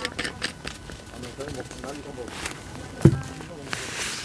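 Small clicks from a soju bottle's screw cap being twisted open. A single thump about three seconds in is the loudest sound.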